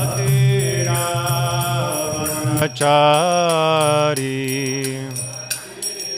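A man chanting Vaishnava devotional prayers in long, held, gently wavering notes over a steady drone, with the ringing of hand cymbals. The loudest phrase comes about halfway through, and the chant thins out near the end.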